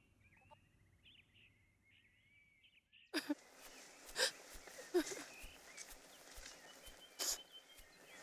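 Birds chirping faintly, then from about three seconds in a louder open-air woodland ambience with birds and a few irregular footsteps through grass.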